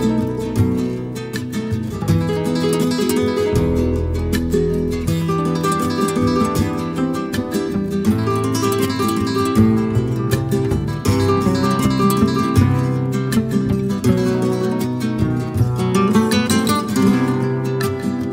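Background music: plucked acoustic guitar played in a flamenco style, with many quick notes.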